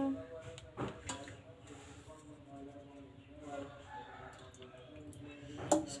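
A faint voice in the background, drawn out and steady, with a few light clicks from kitchen utensils, the clearest about a second in and just before the end.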